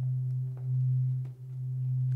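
A steady low electronic hum, one deep unchanging tone that dips briefly a little past the middle.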